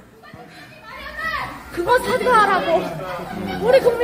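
A young woman shouting in Korean in a scuffle, her voice high and strained, with other voices around her. The first second is quieter before the shouting starts.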